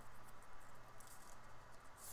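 Faint rustling and flicking of paper play money being handled and counted by hand, in small irregular bursts over a low steady room hum.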